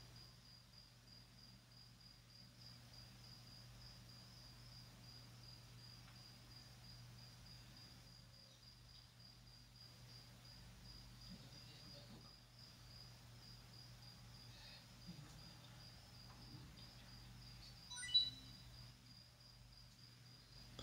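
Near silence: a faint steady, slightly pulsing high-pitched tone over a low hum, with a single short sharp click about 18 seconds in.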